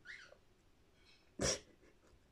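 A woman's single quick intake of breath about a second and a half in, between spoken phrases; otherwise near silence.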